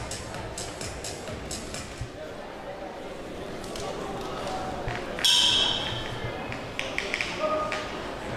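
Boxing ring bell rung once, about five seconds in, to start the second round, its ringing fading over a second or two. Before it there is a low murmur of voices and music in the hall.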